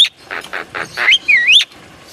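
Crested myna calling: a few short, sharp notes, then a clear whistle that dips in pitch and rises again, ending just before the last half-second.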